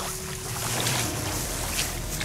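Steady rush of wind and water sloshing in shallow flooded marsh grass, with no distinct strokes or voices.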